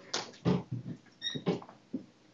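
Short bursts of indistinct voices in the room, several in a row, with a brief high squeak about a second and a quarter in.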